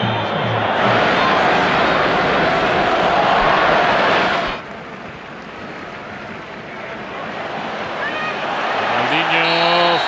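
Stadium crowd noise on a football broadcast: a loud crowd roar that cuts off abruptly about four and a half seconds in, followed by a quieter crowd hum that slowly swells until a commentator's voice comes in near the end.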